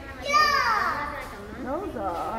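A small child's loud, high-pitched squeal that slides down in pitch about half a second in, followed by softer voice sounds.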